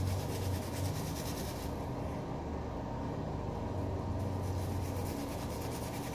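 A wet, soapy cloth towel rubbed and scrunched between the hands to work the soap through it: quick rhythmic rubbing strokes that fade after a second or two.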